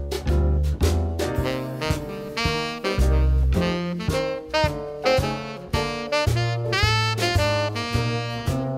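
Tenor saxophone arpeggiating the chords of a ii–V–I in C major (Dm7, G7, Cmaj7), one note after another, over a jazz backing track with a walking bass line and drums. A few notes near the end are bent into.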